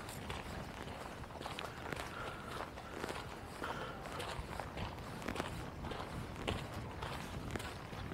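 Footsteps of a person walking at a steady pace along a woodland trail, about two steps a second.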